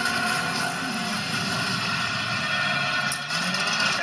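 Film soundtrack music with action sound effects playing from a television speaker, a steady dense mix without speech.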